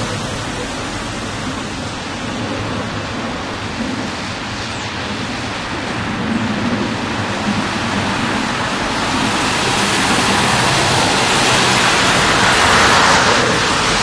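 Steady rushing noise of road traffic, swelling in the second half as a vehicle comes closer.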